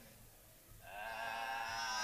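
A person's long held vocal note, starting about a second in and holding steady pitch with a slight waver before sweeping upward at the end.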